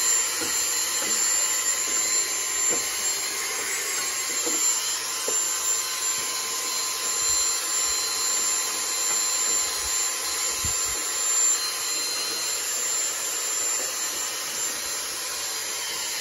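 Dyson handheld stick vacuum running steadily with a high motor whine, its wand sucking dust from a fridge's condenser coil. A few light knocks as the nozzle bumps the coil.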